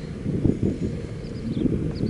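Wind buffeting the microphone: an uneven low rumble with irregular gusts.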